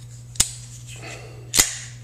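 Kershaw Nerve liner-lock folding knife being worked shut and flicked open: two sharp metallic snaps a little over a second apart, the second louder with a short ring as the blade swings out and locks.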